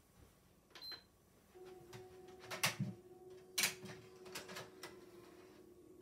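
Faint steady hum of a PlayStation 5's disc drive running, starting about one and a half seconds in, with several sharp clicks and knocks of the console and disc being handled.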